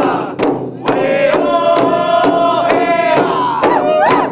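Background music of several voices chanting together over a steady drum beat, a little over two beats a second, with a long held note in the middle.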